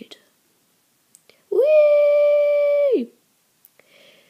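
A high voice holds one long, steady vocal note for about a second and a half, like a drawn-out "whoooa". It slides up into the note and drops away at the end.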